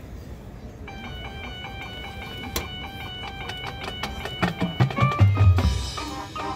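Marching band front ensemble starting to play: high sustained notes enter about a second in, and low drum hits come in and build over the last second and a half.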